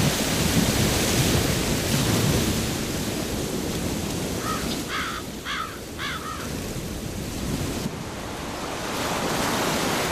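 Sea surf washing on a sandy beach: a steady rushing with wind on the microphone, easing a little in level. Just before halfway, four short calls sound in quick succession.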